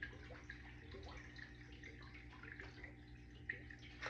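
Faint scattered clicks and light rattling of small scented plastic beads being pressed into a silicone mold, over a steady low hum.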